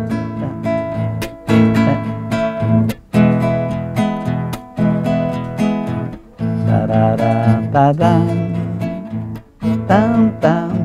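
Classical guitar strummed in a chamamé accompaniment, a steady repeating pattern of strummed chords.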